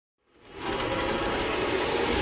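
Logo-intro sound effect fading in about half a second in: a steady, fast-fluttering whir that builds slowly in loudness.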